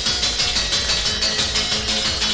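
Happy hardcore dance music from a live DJ mix: a fast, steady beat under held high notes.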